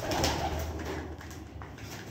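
Domestic pigeons feeding on grain, with one or more cooing during the first second or so and faint light clicks of beaks pecking seed on the floor.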